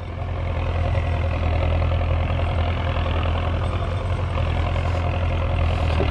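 Belarus 1025 tractor's turbocharged diesel engine running steadily under load as it pulls a tillage implement across the field, a continuous low drone.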